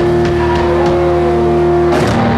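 Live hard rock band: electric guitars holding a sustained chord with one note bending, over drums with a few cymbal hits, and a loud cymbal crash near the end.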